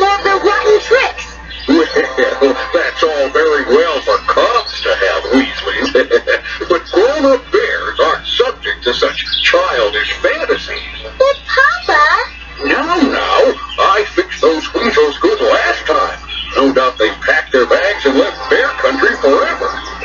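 Cartoon soundtrack from a VHS tape played through a small TV's speaker and picked up in the room: character voices over music.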